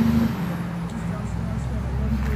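Low, steady engine rumble of a motor vehicle, growing stronger about a second in.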